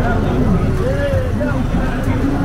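Busy street noise: motorcycle taxi engines running, with a steady low rumble, under the talk of passers-by.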